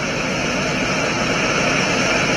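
Full-scale five-segment solid rocket booster for NASA's Space Launch System firing on a horizontal static test stand, a loud, steady rumbling hiss in the first seconds after ignition that swells slightly.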